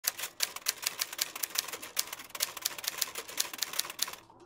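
Typewriter keys clacking in a quick, uneven run of about six strikes a second.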